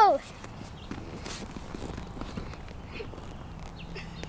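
Faint soft taps and shuffles of children's hands and feet on a foam gymnastics mat, scattered and irregular, over quiet outdoor air.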